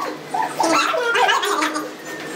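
Several people's excited, high-pitched voices without clear words, yelping and laughing.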